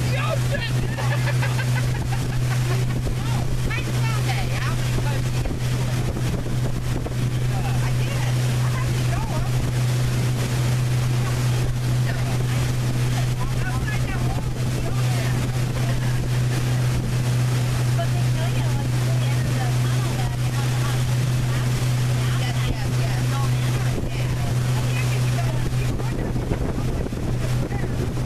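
Pontoon boat's outboard motor running with a steady, even low drone while under way, with wind on the microphone and water rushing past.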